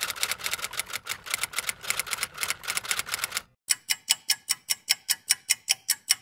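Typewriter-like clicking sound effect: rapid sharp clicks about eight a second, stopping abruptly a little past three seconds in, then after a brief silence a slower run of crisper ticks, about four to five a second, like a clock ticking.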